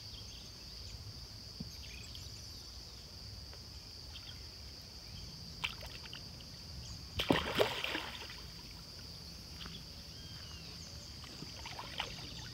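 A big tamba, a pacu-type pond fish, breaking the surface to gulp a floating bread roll: a short, loud splash and slurp about seven seconds in, over quiet water with a steady high-pitched hiss in the background.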